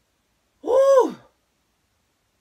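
A woman's single high, breathy wordless cry, under a second long, its pitch rising and then falling. It is her reaction on reading a home pregnancy test that shows negative.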